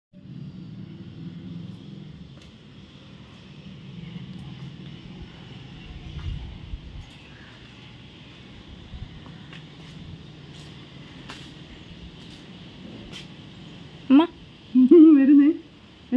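Low, steady background rumble with a few faint clicks, then a woman's voice in two short bursts near the end.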